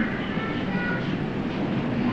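Steady background hiss and rumble of an old hall recording, with a faint thin tone briefly near the start.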